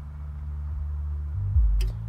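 Car subwoofer driven by a PPI Art Series A600 amplifier playing the bass line of a song, with no highs because the amp has no crossover and runs off the equaliser's sub out. The gain has just been turned down, so the bass is low, swelling again about a second and a half in, with a short click near the end.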